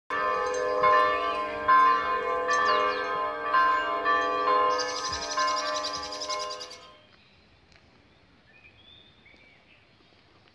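Church bells ringing, with a fresh strike about every second over a sustained hum, and a quick high ringing near the end before they stop about seven seconds in. Faint birdsong follows.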